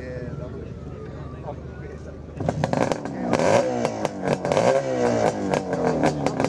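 1972 Suzuki T500 Titan's 493cc two-stroke parallel twin catching about two and a half seconds in, then revved unevenly on the throttle just after start-up.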